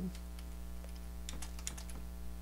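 Computer keyboard keys clicking as text is typed, a quick run of keystrokes about a second and a half in, over a steady electrical hum.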